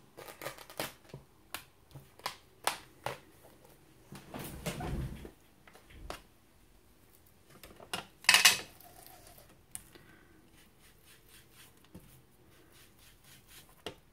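Small clicks, taps and rustles of craft supplies being handled on a cutting mat, with a louder clack about eight seconds in as a Distress Oxide ink pad is picked up and its metal lid taken off.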